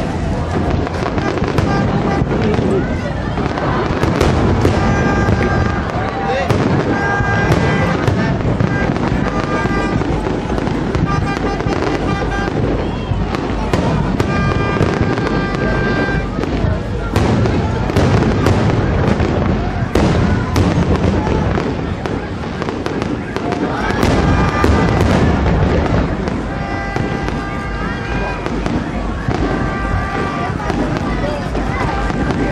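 Aerial fireworks shells bursting in a rapid, irregular series of bangs over a continuous rumble, with crowd voices throughout.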